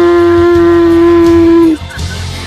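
A singer holding one long, steady sung note over backing music, cutting off shortly before the end.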